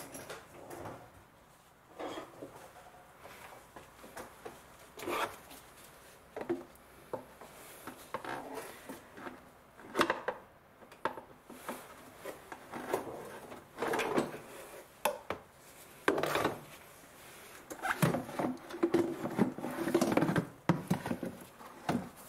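Plastic airbox knocking, creaking and scraping as it is pulled and twisted free of its mounts: a string of irregular knocks and rubs, busier in the last few seconds.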